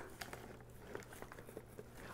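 Faint rustling and small crinkling clicks of crumpled newspaper packing being handled in a cardboard box.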